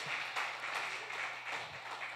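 Faint applause and clapping from a congregation, an even patter without speech.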